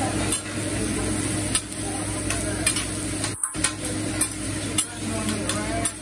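Food sizzling on a hot teppanyaki flat-top griddle, with irregular sharp clicks and scrapes of a metal spatula on the steel as the chef works a heap of fried rice.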